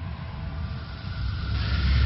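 Cinematic intro sound effect: a deep low rumble, with a whoosh of noise swelling up in the last half second.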